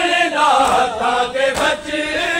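A group of men chanting a noha, a Shia mourning lament, together in one melodic line; the phrase falls and breaks off briefly near the end.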